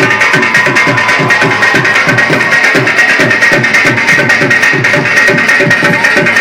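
Two dhols, Punjabi double-headed barrel drums, played live in a fast, even beat over amplified electronic backing music.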